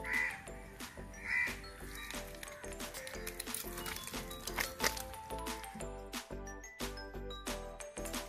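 Background music with a steady beat runs throughout. Two short calls stand out near the start, about a second apart.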